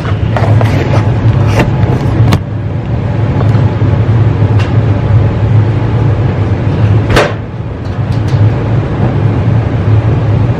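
A laundry machine running with a loud, steady low hum. A few sharp knocks come in the first couple of seconds, and a brief whoosh about seven seconds in.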